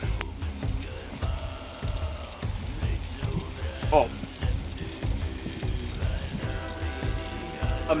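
Irregular crackling from the open cooking fire under the cast-iron pots, over a low wind rumble on the microphone, with faint music in the background.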